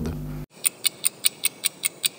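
Evenly spaced clock-like ticking of a channel logo ident, about five ticks a second, starting half a second in after the meeting-room audio cuts off abruptly.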